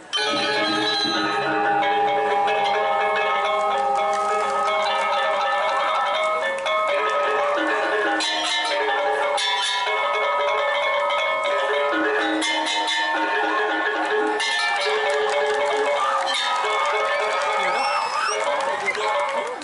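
Balinese gong kebyar gamelan playing: bronze metallophones ringing in fast interlocking patterns over gongs and drums, coming in loudly together after a brief pause. Bursts of bright clashing rise over the ensemble several times in the second half.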